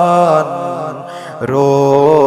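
A man singing a Kashmiri naat, holding long, wavering melismatic notes. The voice softens about a second in and a new phrase starts halfway through.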